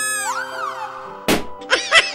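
Cartoon sound effects over steady background music: a pitched tone that rises and falls at the start, a single short thud about a second and a quarter in, then a quick run of bouncy pitched blips near the end.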